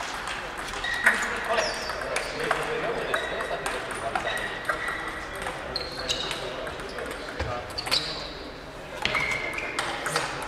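Table tennis balls clicking off rackets and tables in a rally, a series of short sharp knocks, some with a brief ringing ping, with the sharpest hit about a second in.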